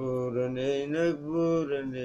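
A man chanting a Somali song unaccompanied: one long held vocal phrase whose pitch rises and falls.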